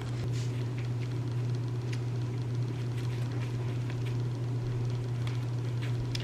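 A steady low hum with faint rustles and a few small clicks, as the camera is handled and set in place.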